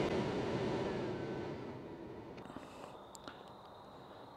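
Mercedes air-conditioning recirculation blower motor running at high speed, a steady rush of air, switched on through a scan tool's bidirectional test with 11 V at the motor. The rush dies away over the first two to three seconds.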